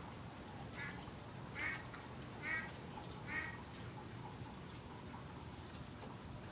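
A duck quacking: four short calls, a little under a second apart.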